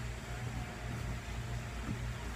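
Steady low background hum with faint hiss in a small room, and no distinct events.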